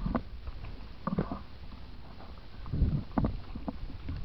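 Mountain bike rolling over a rocky dirt trail, picked up by a camera on the bike or rider: a steady low rumble with irregular clatter and knocks as the bike jolts over stones, the heaviest thuds about three seconds in.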